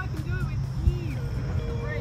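Steady low outdoor rumble with faint voice-like calls over it, and light background music coming in during the second half.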